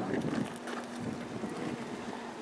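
Wind on the microphone outdoors, with a faint steady low hum underneath.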